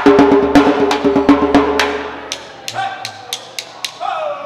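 Live acoustic guitar and djembe playing together, with sharp drum strokes about four a second over a ringing guitar chord. The music dies away about halfway through. Lighter, sharp clicks at a similar pace follow.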